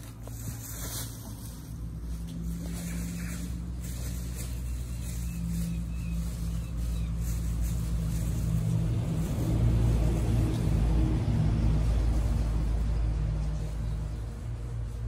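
Small petrol engine, a lawn mower, running steadily with a low hum. It grows louder toward the middle and eases off near the end.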